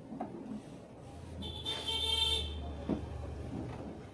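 A motor vehicle horn sounding once for about a second over a low, steady engine rumble, as of traffic passing nearby.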